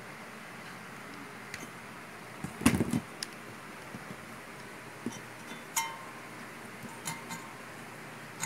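Scattered small metallic clicks and clinks of pliers and wires being handled on a workbench, loudest in a short cluster of knocks between two and a half and three seconds in, over a faint steady hiss.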